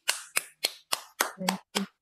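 One person's hand claps: about seven sharp, evenly spaced claps at roughly three to four a second, stopping at the end.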